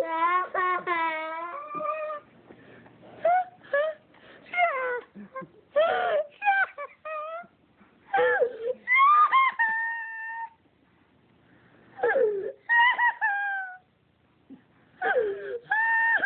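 A young boy crying and whimpering from fright: a long, high, wavering wail at the start, then shorter sobbing cries broken by brief pauses.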